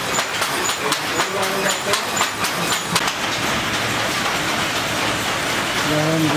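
Wooden hand looms clacking in a quick, even rhythm of several knocks a second, with a short high ping on some strokes, until they stop about halfway through. After that only an even hiss remains.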